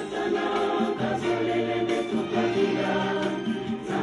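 A choir singing, its voices holding long notes together.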